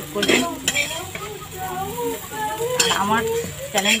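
Metal spatula scraping and clinking against a metal kadai while neem leaves and eggplant fry, with a light sizzle under the strokes.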